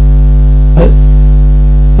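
Steady, loud droning background music with a deep low hum and no changes in pitch.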